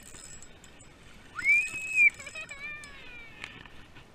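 A child's high-pitched squeal that rises to a held note and then falls away in a wavering cry.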